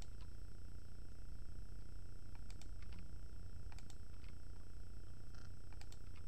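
A steady low hum with a scattered handful of faint computer keyboard keystrokes, some in quick pairs, as code is typed.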